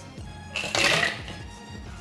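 Ice cubes dropped into a clear plastic blender jug holding mango pulp and lime juice, a short rattling rush about half a second to a second in.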